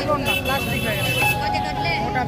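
Indistinct voices over a steady low street and traffic noise, with a few held tones.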